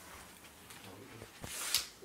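A phone being handled close to its microphone: faint rustling, a short click, then a brief hiss near the end.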